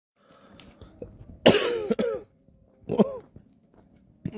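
A man coughing: a loud double cough about one and a half seconds in, then a shorter cough about a second later.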